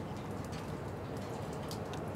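Steady rain, with a few sharp drops ticking close by, over a continuous low rumble.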